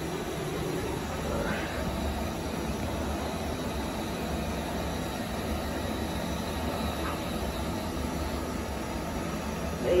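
Steady, even rumble and hiss of room background noise with a faint thin high tone through the middle; the hand dryer is not yet running.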